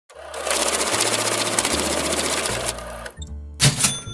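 Intro sound effect: a fast, dense mechanical-sounding rattle for about two and a half seconds that dies away, then a short bright hit with a high ringing tone near the end.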